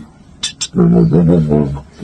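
Beatboxer's mouth percussion: two quick hissing snare-like hits about half a second in, then a sustained, slightly wavering vocal bass tone for about a second.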